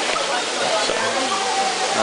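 Steady rush of a small waterfall pouring into a pool, with people's voices over it.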